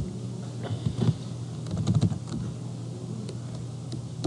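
Typing on a computer keyboard: a web address being keyed in as a run of irregular keystroke clicks over a low steady hum.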